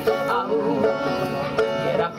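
Small acoustic folk band playing a traditional song, with banjo picking prominent over the other strings, in a short gap between sung lines.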